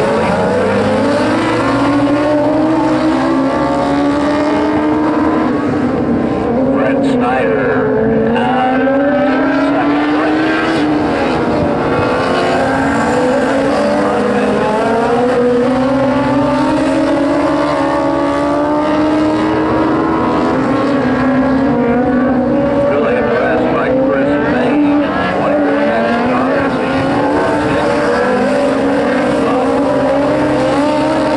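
A pack of dwarf race cars, their motorcycle engines revving hard. Several engines overlap, rising and falling in pitch every few seconds as the cars go through the turns and down the straights.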